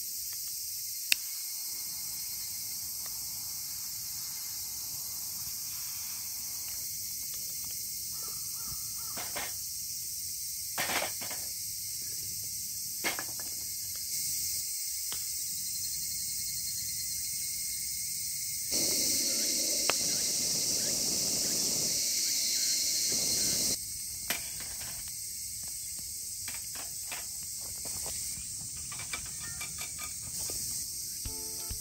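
Summer forest ambience: a steady, high-pitched chorus of insects, growing louder for about five seconds some two-thirds of the way through. A few short calls stand out near the middle.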